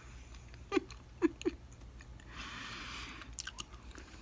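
Faint wet clicks and smacks of a mouth chewing a big wad of gum, with a soft hiss lasting under a second about halfway through.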